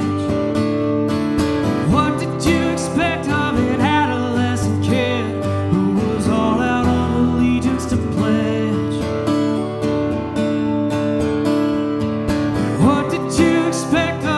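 Acoustic guitar strummed steadily in a country song.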